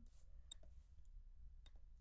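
Two faint computer mouse clicks about a second apart over near silence.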